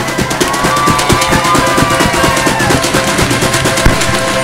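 Folk ensemble playing an instrumental passage of a waltz: steady drum strokes under a sliding melody line, with one louder drum hit near the end.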